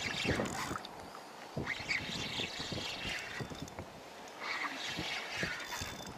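Irregular splashing and sloshing of water in short bursts, louder about two and five seconds in, as a hooked redfish is brought in close.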